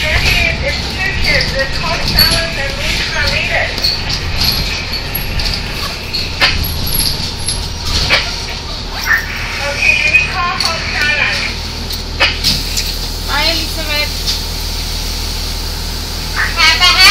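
Indistinct voices over a steady low vehicle rumble, with a few sharp clicks.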